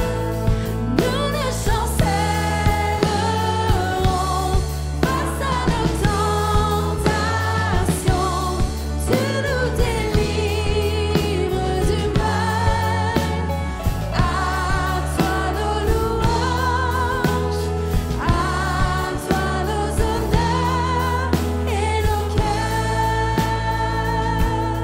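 Live worship band music: a woman sings a French worship song over keyboard accompaniment and a bass line, with a steady beat throughout.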